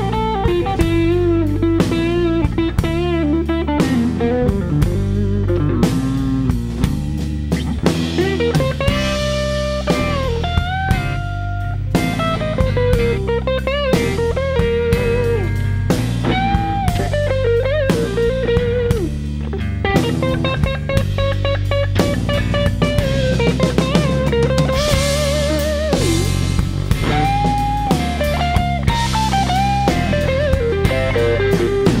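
Live blues-rock band playing an instrumental break: an electric guitar solo with string bends and vibrato over bass, drums and acoustic guitar.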